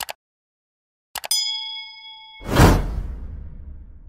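Subscribe-button animation sound effects: two quick clicks, then about a second in a few more clicks and a bell ding that rings for about a second, then a whoosh that fades away.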